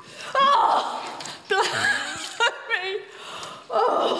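A person gasping and yelping on getting into a shallow water bath, with three high, wavering cries mixed with laughter.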